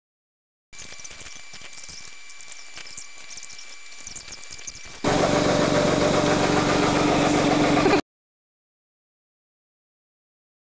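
A faint stretch with a thin high whine, then about five seconds in a loud, steady engine sound starts abruptly. It is most likely the Ford Focus SVT's four-cylinder engine running, and it cuts off sharply about three seconds later.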